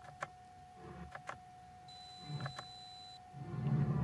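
A few soft clicks from the Lotus Evora's dash stalk button, pressed one at a time to step the clock's hour, over a faint steady whine. A low murmur of a voice comes in near the end.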